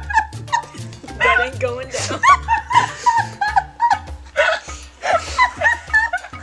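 Several women laughing hard, with high-pitched squeals and giggles, over background music with a repeating bass line.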